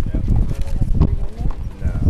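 Tennis balls being hit by racquets and bouncing on a hard court during a practice rally: sharp pops about a second apart, over indistinct voices.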